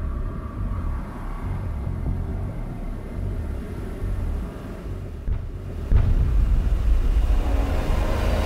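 Cinematic soundtrack rumble: a deep, noisy low drone with little high content, which steps up sharply in level about six seconds in as the music swells.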